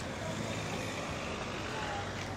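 City street traffic: vehicles running along the road, a steady, even hum with faint voices of passers-by.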